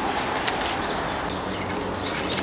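Steady outdoor background noise with faint bird calls in it.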